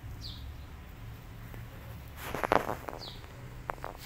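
A bird calling outdoors: a short, high, falling chirp repeated about once a second. About halfway through comes a brief louder noisy burst, and a couple of sharp clicks follow near the end.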